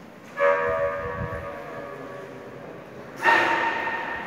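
Church bell struck twice, about three seconds apart, each stroke ringing on and slowly fading.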